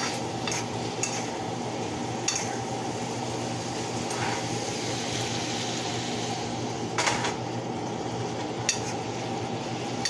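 Chicken pieces sizzling in a frying pan as they are stirred, with several sharp clinks of the metal utensil against the pan, the loudest about seven seconds in.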